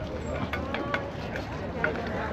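Voices of people talking on a busy pedestrian street, with a few short clicks among them.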